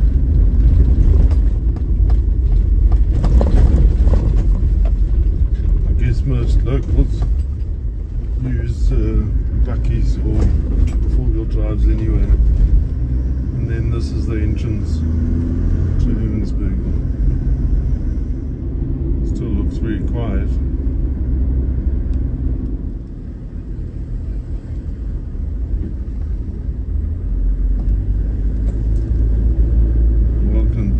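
Cabin noise of a Toyota Land Cruiser Troopy on the move: a steady low engine and tyre rumble over dirt road, then tarmac, with a faint voice heard now and then.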